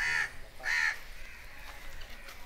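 A crow cawing: two short, harsh caws about two-thirds of a second apart in the first second.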